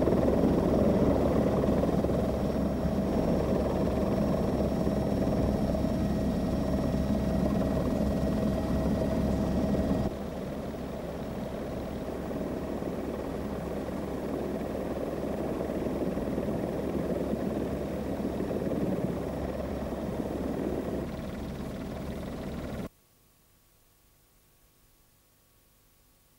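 Helicopter running steadily, heard from aboard as the camera films from the air: a dense, even rotor and engine noise with a faint steady tone. It steps down in level about ten seconds in and cuts off abruptly near the end.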